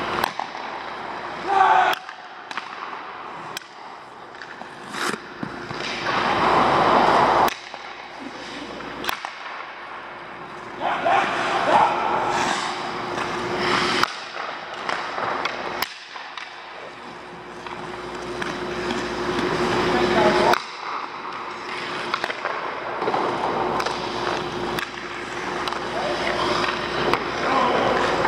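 Hockey skates carving and scraping on rink ice in repeated rushes, each swell of scraping stopping suddenly, with sharp clicks and cracks of sticks and pucks, over a steady hum.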